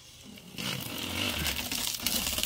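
Clear protective plastic film being peeled off a new flat-screen TV's bezel: a steady ripping hiss that starts about half a second in and grows louder.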